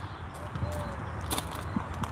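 Quiet outdoor background with a steady low hum and a single soft click just past the middle.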